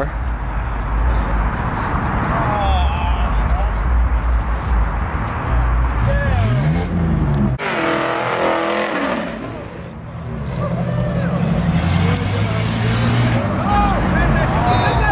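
Car engine revving hard during a burnout, its pitch rising and falling, with spectators' voices and shouts over it. About halfway through, a harsh rushing noise takes over for a couple of seconds, then the engine note returns.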